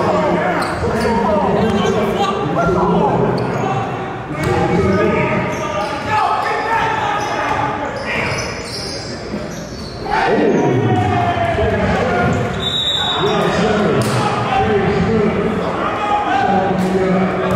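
Basketball bouncing on a gym floor during play, under the steady chatter and shouts of players and onlookers, echoing in a large gymnasium.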